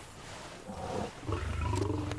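A lion's low call, starting about a second in and growing louder, deep and rumbling.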